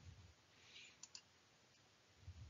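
Near silence: room tone, with two faint short clicks about a second in.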